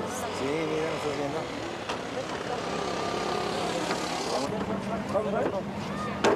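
Indistinct voices over steady outdoor noise. About four and a half seconds in, the hiss drops away and a low steady hum begins.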